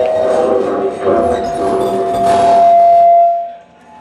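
Live noise music: a loud, dense wash of sound with a held tone that creeps slowly up in pitch, then cuts off suddenly shortly before the end.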